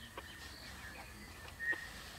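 Faint outdoor ambience: a thin, steady high-pitched animal call that swells into a brief louder note about once a second, with a couple of faint ticks.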